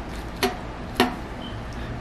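Two sharp knocks of a steel kitchen knife against the cutting board, a little over half a second apart, each with a brief ring.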